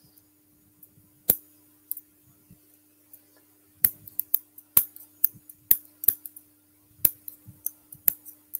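Irregular sharp clicks, most of them in the second half, from someone handling computer controls at a desk while recording. A faint steady electrical hum runs underneath.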